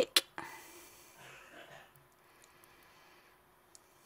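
Mostly quiet room tone: one sharp click just after the start, then a soft hiss that fades out over about a second and a half.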